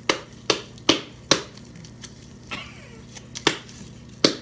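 Bare hands patting and slapping a ball of cookie dough: three sharp slaps in the first second and a half, then two fainter ones.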